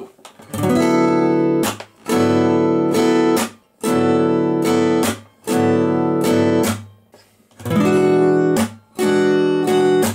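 Steel-string acoustic guitar, capoed at the second fret, strummed slowly: each chord starts with a downstroke followed by lighter upstrokes. It rings in blocks of about a second and a half with short breaks between, moving through C6/9 and D9 chord shapes.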